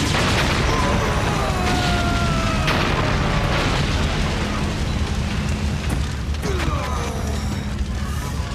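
TV action-scene soundtrack: a steady low music bed with booming explosion effects and sharp hits, and sliding sound effects that fall in pitch in the first few seconds.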